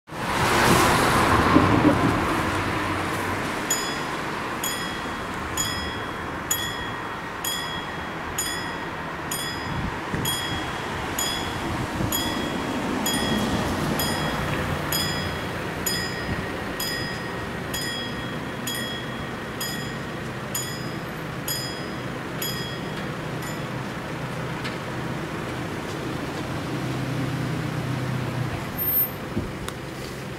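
Classic mechanical bell of a German level crossing ringing with even strokes a little over once a second, warning that the crossing is closing for a train; it falls silent about 24 s in. A rushing intro sound opens the first couple of seconds, and road traffic runs underneath, with a vehicle engine swelling near the end.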